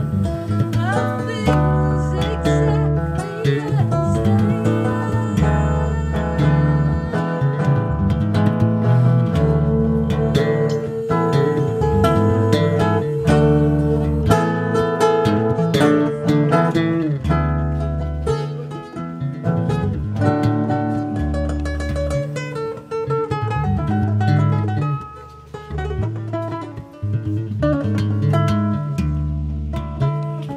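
Acoustic guitar and electric bass playing a song together live, the guitar plucked and strummed over a moving bass line. The music dips briefly about 25 seconds in, then carries on.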